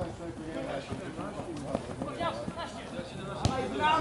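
Distant shouts and calls of footballers on the pitch, with one sharp knock of the ball being kicked a little past three seconds in.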